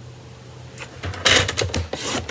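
Cardstock being handled on a paper trimmer: a few light clicks and knocks with a short papery swish about a second and a half in.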